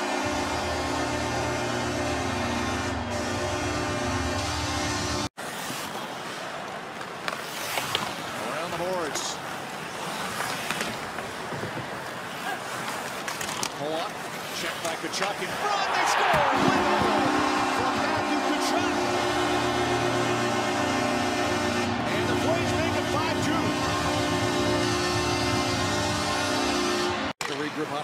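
Ice hockey arena broadcast sound: music playing over the arena noise. It cuts off suddenly about five seconds in and gives way to a stretch of noisy arena sound. Music returns about sixteen seconds in and runs until another abrupt cut just before the end.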